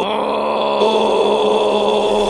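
Cartoon characters screaming in one long, steady held yell.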